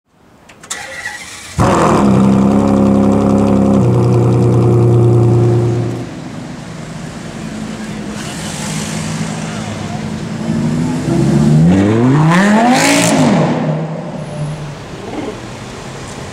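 A supercar engine held at high, steady revs, with one shift in pitch partway through. After a sudden drop in level, the V10 of a Lamborghini Gallardo LP570-4 Superleggera with a titanium exhaust runs quietly, then revs up sharply and falls back, loudest about two-thirds of the way in.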